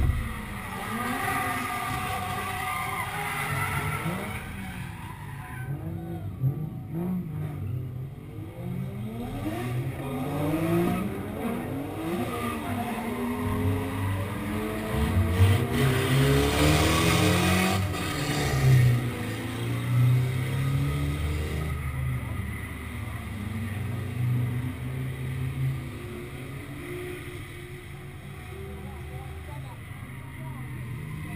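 Drift car engines at the start line: a steady idle close by, while a car ahead revs up and down repeatedly. A little over halfway in there is a brief burst of tire squeal as it launches away.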